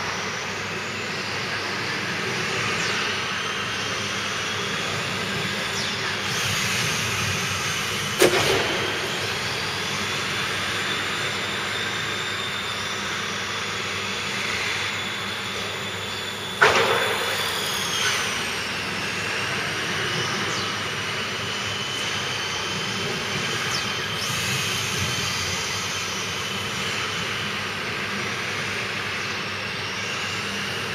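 1:10-scale electric RC cars racing, their motors giving a high whine whose pitch rises and falls as they speed up and slow down. Two sharp knocks cut in, about eight seconds in and again past halfway.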